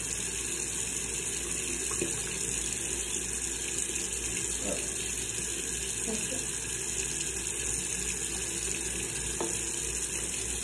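Bathroom faucet running steadily into the sink, with a few faint light knocks.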